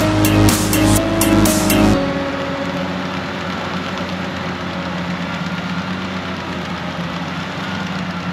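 Electronic music with a beat cuts off about two seconds in, leaving the steady running of a Fendt 722 Vario tractor pulling a Dangreville manure spreader at work.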